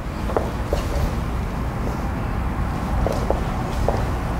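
Steady low rumble of room noise, with a few brief, faint squeaks of dance shoes on a wooden floor as a couple steps through the dance.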